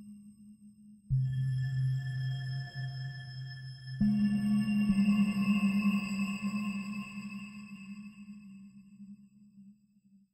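Minimal experimental electronic music: held low tones with faint high overtones, a new tone entering abruptly about a second in and a louder one about four seconds in, then fading away toward the end.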